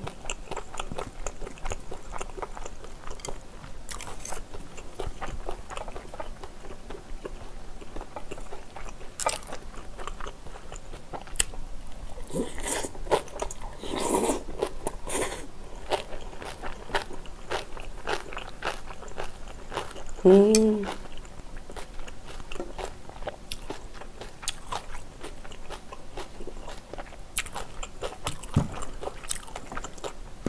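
Close-miked chewing and mouth sounds of a person eating spicy stir-fried squid and pork with glass noodles and rice: a steady run of small wet smacks and clicks. There is a louder, noisier stretch of chewing a little before halfway, and a short hummed "mm" about two-thirds of the way in.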